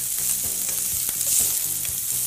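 Diced turkey roll sizzling as it fries in a metal skillet, stirred and scraped with a wooden spatula, being browned until crunchy.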